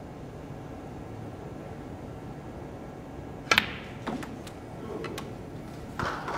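A snooker shot: one sharp click of snooker balls striking about halfway through, followed by a few fainter knocks as the balls roll on. Under it is the low hush of a quiet arena.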